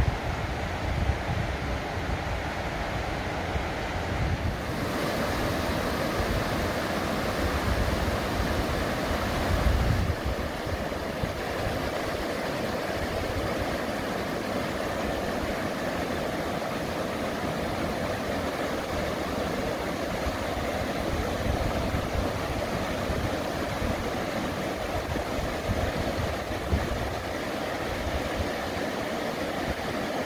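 Rushing of fast river rapids, a steady spread of water noise, with low gusts of wind buffeting the microphone. About five seconds in, the water sound grows brighter and fuller.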